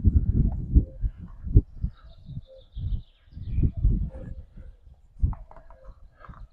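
Microfibre cloth wiping a car's side window glass dry, with irregular low rubbing and thumping noises from the cloth and hand working over the glass.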